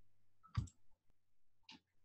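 Quiet room tone with two brief faint clicks, one about half a second in and a fainter one near the end.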